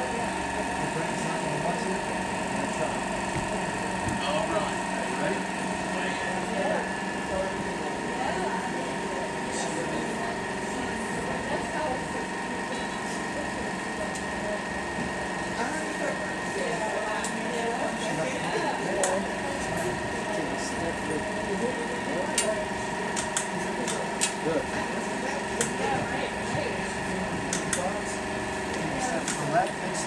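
Indistinct voices talking quietly over a steady machine hum made of several held tones, with a few light clicks in the second half.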